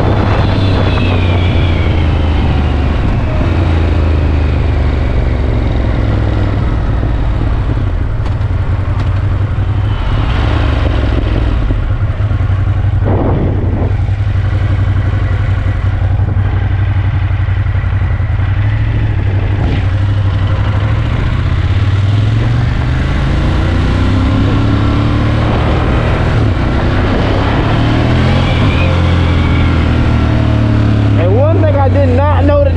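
2017 Ducati Monster 1200 S's 1198 cc Testastretta L-twin engine heard from the rider's seat under way, over a steady rush of wind and road noise. The engine note falls as the bike slows in the first few seconds and climbs again as it accelerates near the end.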